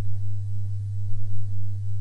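Steady low electrical hum on the recording: one unchanging low tone with faint hiss above it.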